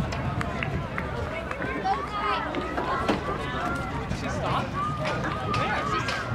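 Overlapping voices of spectators around the track, talking and calling out, with no single clear speaker.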